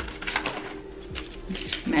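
Handling of a cardboard test box and a pregnancy-test stick's wrapper: light rustles, clicks and taps.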